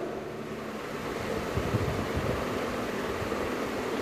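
Steady background noise, an even hiss, with a brief faint low rumble about a second and a half in.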